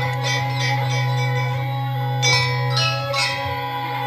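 Live gamelan music: bronze metallophones struck in a ringing, bell-like pattern over a steady low hum.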